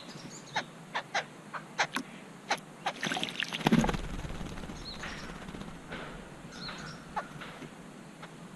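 Babblers bathing in a water bowl: a string of short, sharp splashes and harsh notes, a dense flurry of splashing about three to four seconds in, then a couple of faint high chirps.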